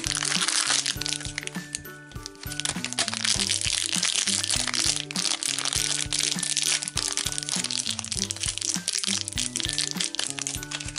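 A thin wrapper crinkling and crackling continuously as it is pulled open and unwrapped by hand to free a small toy figure, over children's background music.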